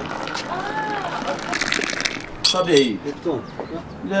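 Tea poured in a stream from a stainless steel teapot into a glass, splashing as it fills, then a short sharp clatter about two and a half seconds in.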